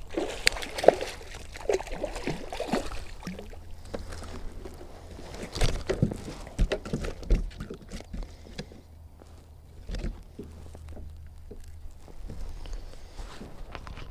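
Water sloshing and splashing beside a kayak as a hooked largemouth bass is pulled in and landed by hand, with scattered short knocks and clicks of handling against the hull.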